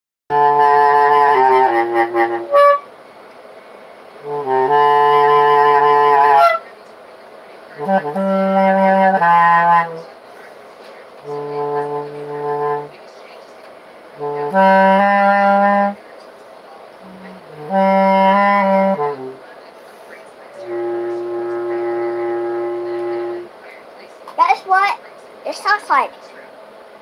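Bass clarinet played in about seven short phrases of held low notes, each phrase one to two and a half seconds long with a step or two in pitch, separated by brief pauses.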